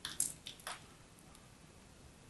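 A ball of crumbly pressed soap crushed and crumbling in the hands, giving a few short crunches within the first second.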